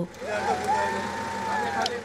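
A person's voice crying out in one long drawn-out call, rising a little at the start and falling away at the end, over a steady background hiss.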